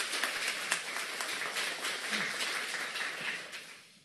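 Audience applauding: dense clapping from many hands that dies away near the end.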